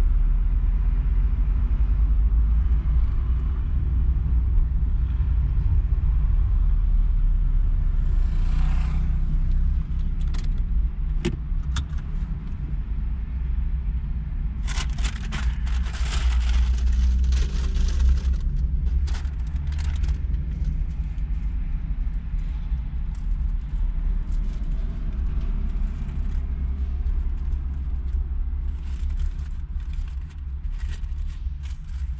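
Low steady rumble of a car's engine and tyres heard from inside the cabin as the car rolls slowly and then idles. Scattered light clicks and rattles, with a few seconds of louder rushing noise about halfway through.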